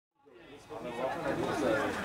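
Several people talking at once, a murmur of overlapping voices from spectators at a football match, fading in from silence during the first second.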